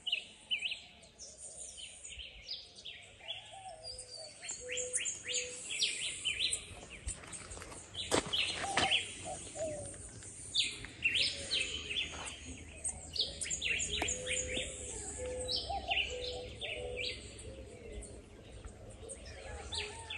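Wild birds chirping and calling: many short, high chirps overlapping one another throughout, with a few held lower whistled notes.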